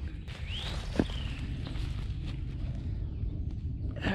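Rustling of dead leaves and feathers as a shot wild turkey is handled on the forest floor. About half a second in, a faint bird call sounds, a high slurred whistle rising and then falling, and a single sharp click comes about a second in.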